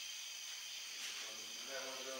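Faint steady hiss of a quiet recording. A faint pitched, voice-like sound comes in during the second half.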